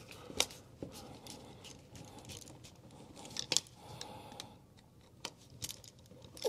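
Screwdriver turning a wall outlet's side terminal screw down on a wire: scattered small clicks and scrapes of metal on metal, with a close pair of sharper ticks about halfway through.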